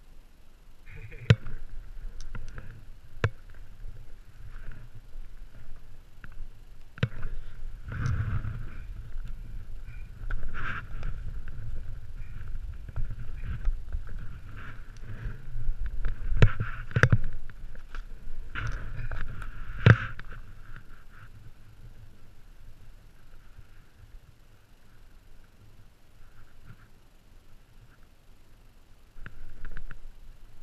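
Snowboard sliding over snow, with wind rumbling on the camera microphone and several sharp knocks; it goes quieter for the last several seconds.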